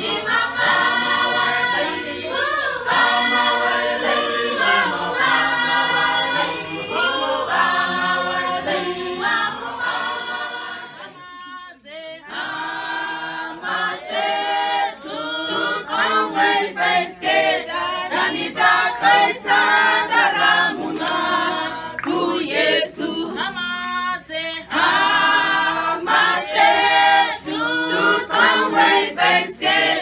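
A small choir of mixed voices singing a cappella, with no instruments. About eleven seconds in, the singing breaks off briefly and then resumes with a new song led by women's voices.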